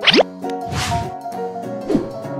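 Channel logo intro: music with a quick rising pop effect at the start and a swish about three-quarters of a second in.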